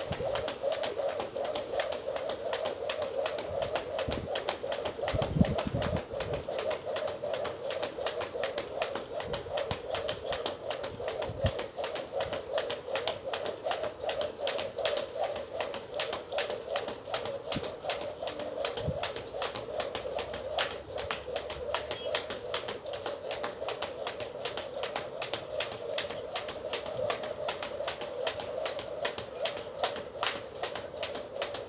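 A skipping rope slapping the ground in a steady rhythm of about two to three strikes a second, with a steady hum underneath.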